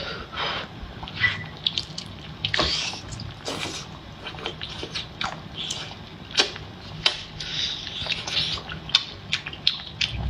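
Close-up wet eating sounds of a person chewing and slurping braised octopus tentacles in thick spicy sauce, with many short, irregular mouth smacks and clicks.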